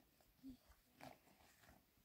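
Near silence, with a couple of faint footsteps on dry, stony ground.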